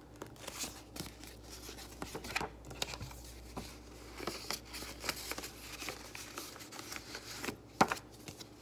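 Paper and plastic rustling and crinkling as cash and a paper budget envelope are handled in a ring binder with plastic pockets, with scattered soft clicks and one sharper click near the end.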